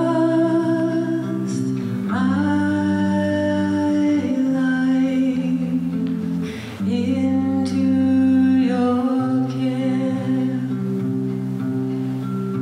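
A woman singing a slow song with long held notes, accompanying herself on guitar.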